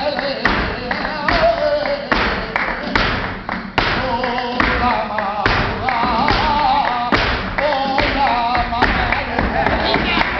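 Live flamenco bulería: a male cantaor singing ornamented, wavering vocal lines over flamenco guitar, with sharp palmas (rhythmic hand claps) and tapping strikes throughout.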